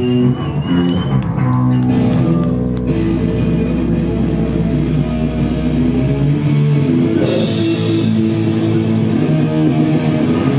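Live rock band playing: distorted electric guitar and bass holding notes over drums, with a wavering high guitar tone in the first second. About seven seconds in, a wash of cymbals comes in.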